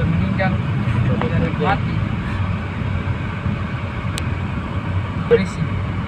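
Steady low road and engine rumble heard from inside a moving car's cabin, with a few brief snatches of talk.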